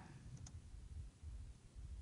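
Two faint clicks from computer input about half a second in, over a low room hum, as a formula is entered in a spreadsheet.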